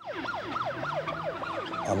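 Ambulance siren on a fast yelp, its pitch sweeping up and down about four times a second.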